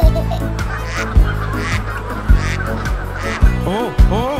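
Cartoon goose honking a few quick times near the end, over children's background music with a steady beat.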